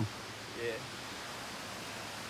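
Steady rushing noise of a waterfall.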